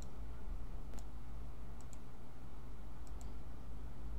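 Computer mouse clicking a few times, once at the start, once about a second in, then two quick double clicks, over a steady low hum.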